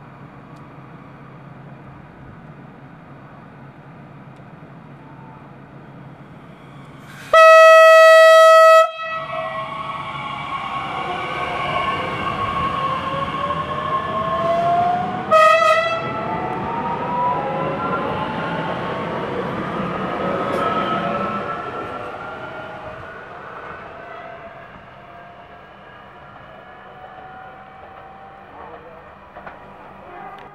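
DB class 442 Talent 2 electric multiple unit sounding a loud horn for about a second and a half, then a short second blast, as it passes at speed. The pass brings whining traction motors in many rising and falling tones, and the noise fades away over the last several seconds.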